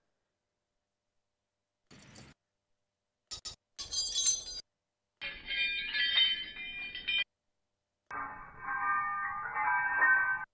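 A recorded sample of jingling keys played back in Waldorf Spectre at several pitches from the on-screen keyboard. There are two short blips, then three longer playbacks of about one to two seconds each, every one lower and duller than the last as the notes are played below the sample's root key.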